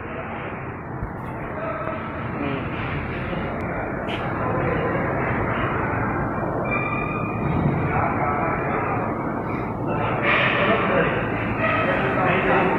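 Steady hum and rumble of machinery in a garment screen-printing workshop, getting slightly louder, with indistinct voices in the background.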